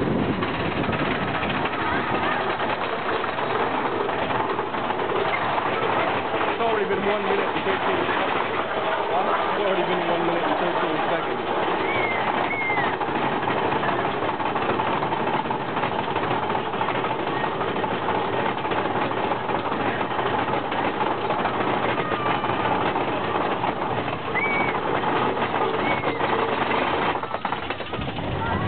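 Big Thunder Mountain Railroad mine-train roller coaster running on its track: a steady, loud rushing rattle from the moving train. A few short high cries, likely from riders, come around the middle and near the end.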